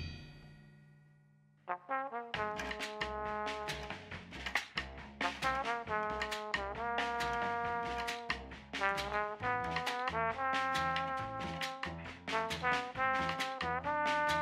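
Jazz band of tenor saxophone, trombone, double bass and drums playing a horn melody over walking double bass and drums. It comes in about two seconds in, after a brief silence.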